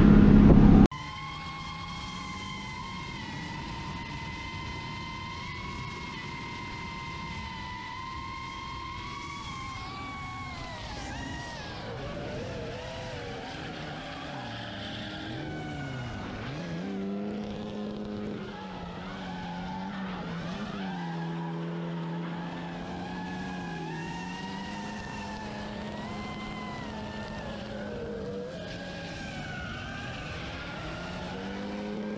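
Cars drifting in tandem: engine notes rising and falling as they are revved through the corners, with tyre skid. A steady high whine holds for the first several seconds before the pitches start to wander.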